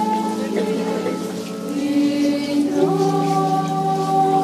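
A crowd singing a slow hymn in long, held notes, moving to a new note about three quarters of the way through.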